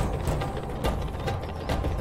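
Background music from the serial's score: a low drum rumble with repeated sharp percussive strikes and faint held tones.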